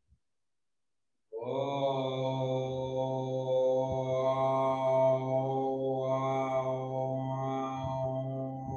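A deep, chant-like drone starts suddenly about a second and a half in and holds one steady low pitch with a rich stack of overtones.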